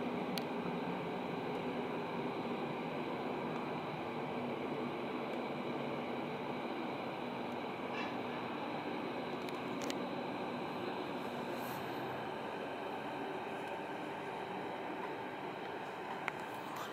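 A steady, even background hum with a few faint steady tones running through it and a few brief faint clicks.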